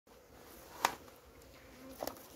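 Honeybees buzzing faintly around the hives, with one sharp click a little under a second in.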